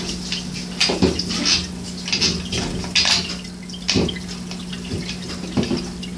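Meccano construction-kit parts and bolts being handled and fitted together by hand: a handful of sharp clicks and light clatter of small hard pieces, over a steady low hum.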